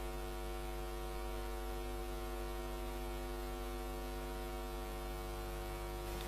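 Steady electrical hum, a low drone with a buzzy edge that holds constant with no other sound.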